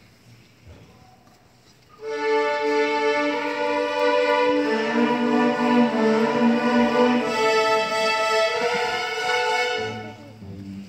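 Student string orchestra of violins, violas, cellos and bass starts playing about two seconds in, with loud, held bowed chords that change a few times.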